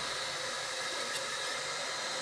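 Steady hiss of a lit gas stove burner heating a pot that is being brought to the boil.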